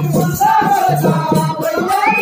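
Live Telugu folk-drama music: a wavering melody line over a steady rhythm of drum strokes and rattling percussion.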